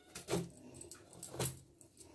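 Kitchen knife shaving peel off a raw bottle gourd, two short crisp scraping strokes about a second apart.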